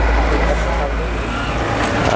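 A steady low rumble under a broad noisy hiss, easing off near the end.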